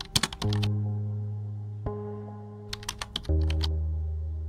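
Computer-keyboard typing sound effect: two quick bursts of key clicks, one just after the start and one about three seconds in. Under it, slow background music of held chords, a new chord about every one and a half seconds.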